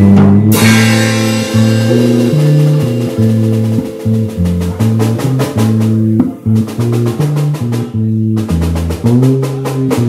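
Instrumental band playing live: drum kit keeping a busy beat under a moving bass line and guitar, with a cymbal crash about half a second in.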